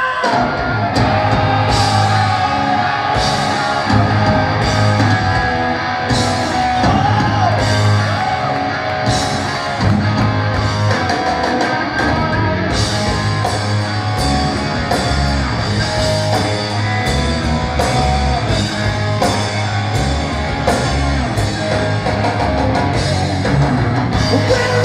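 A live hard-rock band playing loudly, with electric guitars, bass and a steady drum beat, and a male lead vocal over it at times, as heard from the audience in a large hall.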